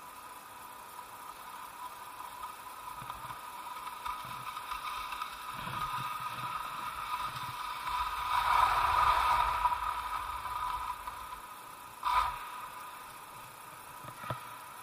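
Skis sliding and scraping over hard, icy snow, the scrape swelling to its loudest about eight to ten seconds in, with a short sharp scrape near the end. A steady high hum runs underneath.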